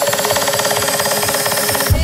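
Coronita-style electronic dance music in a build-up: a fast roll of repeated beats under a rising high-pitched sweep, with the bass pulled out. The bass comes back in right at the end.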